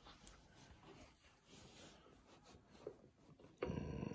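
Faint rustle and light ticks of quilt fabric being handled, then near the end a sewing machine suddenly starts and runs steadily, stitching the folded-over binding down.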